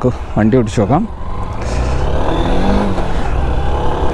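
Honda Unicorn 160 BS6's single-cylinder four-stroke engine and exhaust running under way, heard from the saddle. The engine note rises in pitch through the middle of the stretch.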